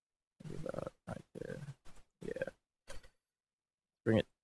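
A man's voice making short wordless vocal sounds close to the microphone, about five bursts over three seconds, with dead silence between them.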